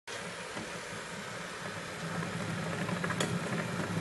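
Kinetic sculpture mechanism running: a steady low mechanical hum that grows louder from about halfway through, with one sharp click just after three seconds.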